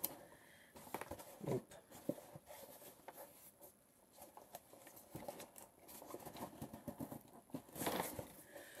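A small cardboard box being handled and worked open: faint, irregular scraping, rustling and light taps of fingers on the cardboard.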